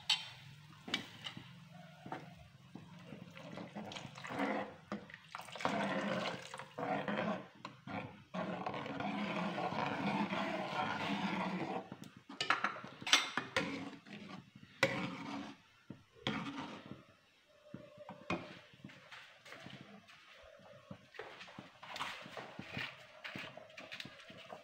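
A spoon stirring cornflour slurry into soup in a karahi to thicken it: swishing of the liquid, steadiest for a few seconds around the middle, with scattered clinks and knocks of the spoon against the pan.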